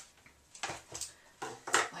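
Ribbon being handled and pulled taut in a few short rustles, then a pair of scissors snipping through it near the end.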